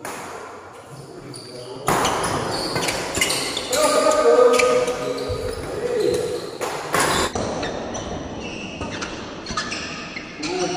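Badminton doubles rally in a large indoor hall: sharp racket strikes on the shuttlecock and shoes squeaking on the court floor. Voices rise in the hall about two seconds in.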